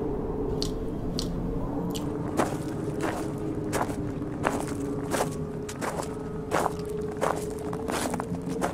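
Footsteps crunching over heaped rubbish and debris, a step about every two-thirds of a second from about two seconds in, with a faint steady hum underneath.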